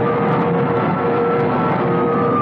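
Radio-drama sound effect of a huge flood wave: a loud, steady rushing noise with a few held tones sounding over it.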